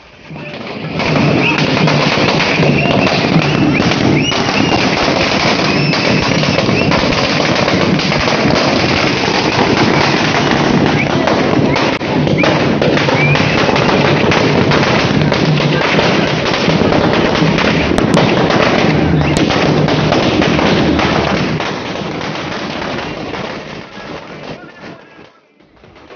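A long string of firecrackers going off in a rapid, unbroken crackle of loud bangs, starting about a second in and tailing off near the end.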